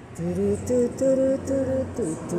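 A woman's voice singing a slow melody in short held notes that step up and down, without clear words, over a faint steady low hum.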